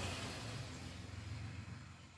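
Faint scratching of a felt-tip marker drawing a line on paper over a low steady hum, fading toward the end.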